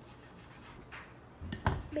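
Hands rubbing and brushing against a table top, then a short thump about a second and a half in as a bagel sandwich on a plate is set down on the table.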